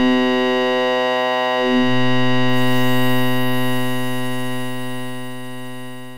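Music: a single held synthesizer tone, re-struck about two seconds in, then slowly fading out as the closing note of a Tamil kuthu remix mix.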